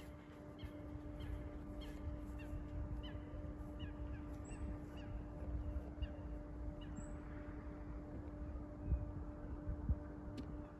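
Outdoor ambience: short, high bird calls repeating about twice a second over a low wind rumble on the microphone and a steady faint hum.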